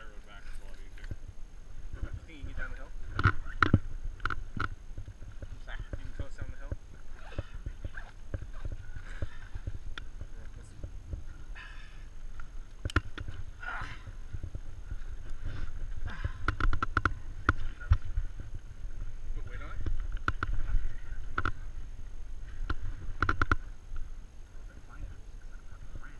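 Rustling and irregular clicking of gear being handled: a backpack and first-aid supplies worked by hand, over a steady low rumble of wind on the helmet microphone.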